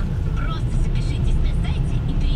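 Low, steady engine and road rumble heard inside the cabin of a moving car.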